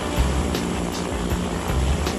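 Zeppelin NT airship's swiveling propellers and engines running at takeoff power as it lifts off almost vertically, mixed with background music.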